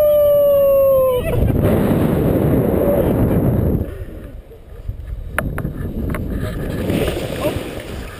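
Wind rushing over the microphone of a tandem paraglider coming in low to land, loud for the first four seconds and then dropping off as the glider slows and touches down, with a few sharp clicks. At the very start a long held cry slides slightly down in pitch and stops about a second in.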